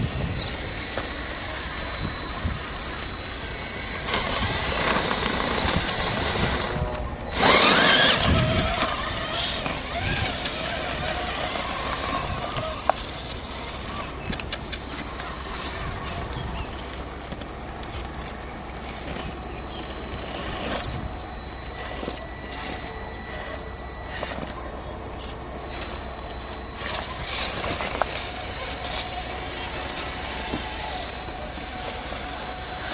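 Axial XR10 radio-controlled rock crawler's electric motor and gearbox whining, the pitch wavering up and down as the throttle is worked while it climbs rock. A loud rushing burst comes about eight seconds in, with a few short clicks later on.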